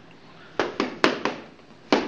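Boxing gloves punching focus mitts: sharp slaps, four in quick succession about halfway in, then one more near the end.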